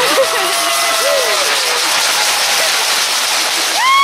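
Crowd of football fans cheering and applauding, with scattered whoops and yells and one loud whoop near the end.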